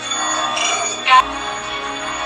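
Background music from the TV episode's score, with held tones and a brief sharp accent about a second in.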